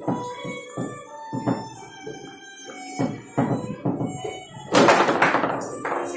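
Foosball play: sharp knocks and clacks as the ball is struck by the plastic players and the rods bang against the table, in quick irregular bursts, over faint background music. About five seconds in comes a louder noisy burst that fades within a second.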